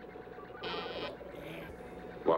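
Telephone line buzzing in short tones about half a second long, a strong one about two-thirds of a second in and a fainter one near the end, over a steady low hum.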